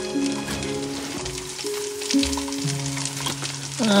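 Soft music with slow held notes that change pitch every second or so, over a steady sizzling sound of food cooking in a pan.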